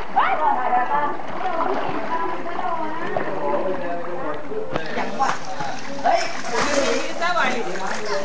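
Water splashing as crocodiles lunge up out of the pond for meat dangled on a line, with sharper splashes from about five seconds in, under voices chattering.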